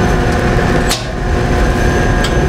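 A single sharp click about a second in as the main power circuit breaker on an Airco Temescal e-beam evaporator is switched on. It sits over a steady low machine hum with a few steady tones.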